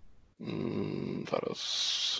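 A man's breath noise close to the microphone, without words: a rough, snore-like inhale starting about half a second in, then a short hiss near the end.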